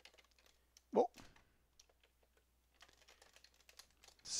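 Computer keyboard typing: scattered single keystrokes, with a quicker run of them near the end.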